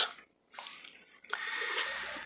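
A man drawing a breath between sentences, a soft rushing noise lasting about a second, starting partway through.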